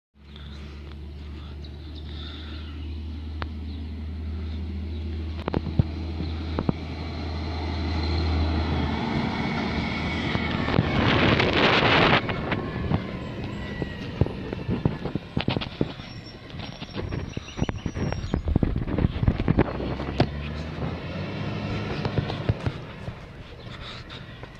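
A heavy vehicle's engine running with a steady low hum, building to a loud hiss about eleven seconds in, followed by a run of sharp knocks and clicks.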